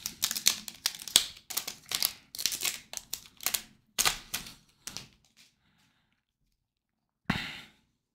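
Foil wrapper of a Topps baseball card pack crinkling and tearing as it is ripped open by hand, a rapid run of crackles that dies away after about five seconds. One short rustle follows near the end.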